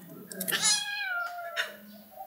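Kitten giving one drawn-out meow lasting about a second that slides down in pitch as it goes, ending with a short sharp sound.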